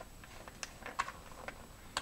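A few faint clicks as the threaded retaining ring on a snowmobile's choke lever mount is turned off by hand.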